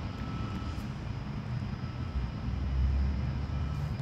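A low, steady rumble that swells for a second or so past the middle.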